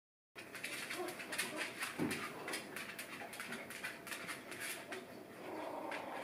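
Three-week-old puppies moving about on a blanket: a steady run of faint ticking and scrabbling, with a soft puppy whimper about a second in.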